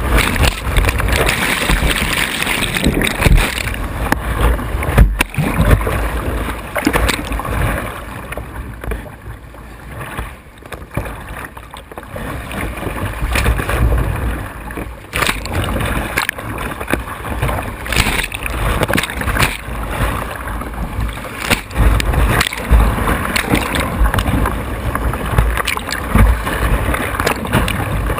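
Whitewater rapids rushing and splashing over a kayak's bow and the camera mounted on it, with sharp slaps of water on top. The rush eases for a few seconds in the middle, then builds again.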